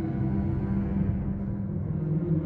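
Dark ambient electronic music: a low drone, with the higher tones thinning out through the middle and coming back near the end.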